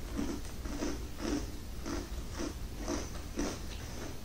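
A person chewing a mouthful of crunchy ball-shaped cereal in milk, with steady crunches about twice a second.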